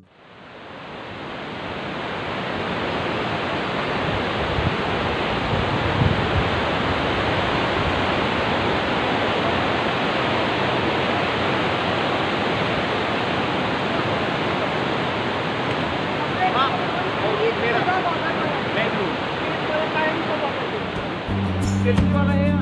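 Mountain river rushing over rocks, a steady wash of water noise that fades in over the first couple of seconds. Faint voices of people can be heard through it near the end.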